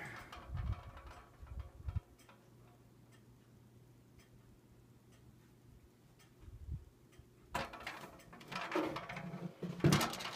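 Handling noise from a handheld camera being moved around a box fan: rumbling and rustling for the first two seconds and again near the end. In between it is quiet, with a faint low hum and faint ticking.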